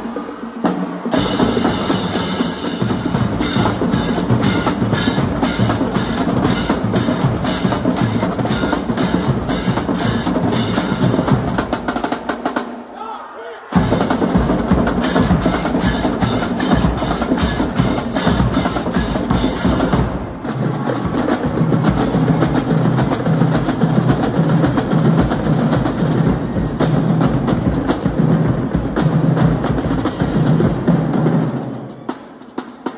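High school drumline playing a fast cadence on snare drums, bass drums and crash cymbals, with rapid, dense strokes. The playing drops out briefly about halfway through and then comes back in loud, and in the later part the bass drums repeat pitched low notes under the snares.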